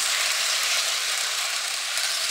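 Hornby Blue Rapier model train running on its track: a steady hissing whir with no distinct clicks.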